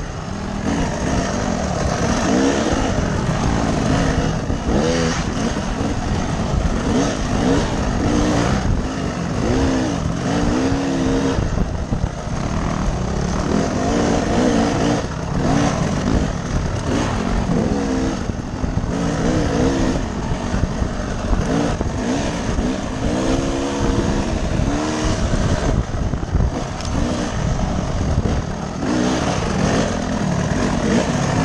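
Dirt bike engine heard from the rider's helmet camera, its pitch rising and falling again and again as the throttle is opened and closed along a trail.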